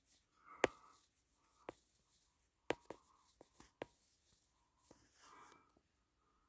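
Faint handling noise from a handheld camera moved close over a porcelain toilet bowl: a scattered string of sharp clicks and taps, the loudest about half a second in and several bunched together in the middle, with soft rustling between them.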